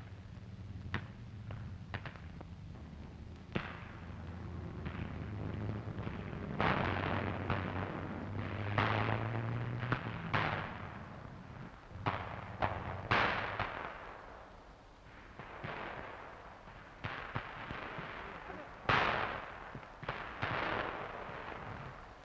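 Battle gunfire and explosions on an old wartime film soundtrack: scattered sharp reports at first, then a heavier run of shots and blasts from about six seconds in, each trailing off. A low rumble underneath fades out about two-thirds of the way through.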